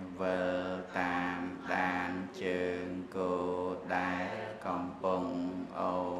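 A voice chanting Buddhist text in a slow, even rhythm on held, steady notes, with a new syllable roughly every 0.7 seconds.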